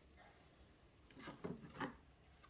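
A few faint, short rubbing sounds in the second half, after a nearly quiet first second.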